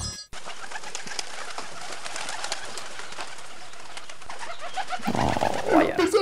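Birds calling over a steady outdoor ambience. A voice comes in about five seconds in and is louder than the birds.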